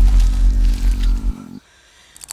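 Deep, loud low rumble from a horror film's sound design, wavering in level, which cuts off abruptly about one and a half seconds in.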